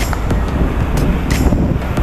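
Wind buffeting the microphone on a boat running at speed, over the steady noise of its outboard motor and hull, with a couple of short knocks about a second in.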